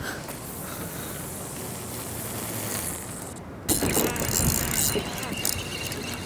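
Fishing reel at work, its mechanism whirring and clicking. A hiss runs through the first three seconds; after a short break about three and a half seconds in come denser rattling clicks as a hooked fish is reeled in.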